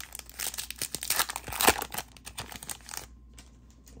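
Foil wrapper of a 2024 Bowman baseball card pack being torn open and crinkled by hand, a dense run of crackles and rips over about three seconds that stops shortly before the end.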